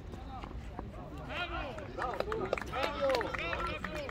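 Shouted calls from young footballers and people around the pitch, heard from a distance, several overlapping from about a second in, over a steady low rumble.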